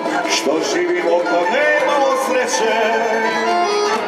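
Live tamburica band playing Serbian traditional music: plucked and strummed tamburicas with accordion, and a singer's voice over them.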